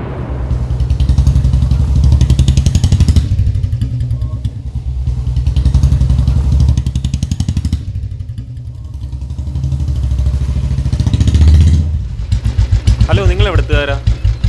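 A motorcycle engine running with a rapid, even thudding exhaust beat as the bike rides along. It grows louder and fades several times. A person's voice comes in near the end.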